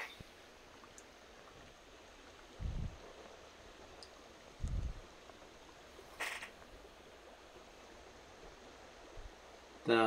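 Faint steady rush of a small creek flowing over a riffle, with two dull low thumps about three and five seconds in and a brief hiss about six seconds in.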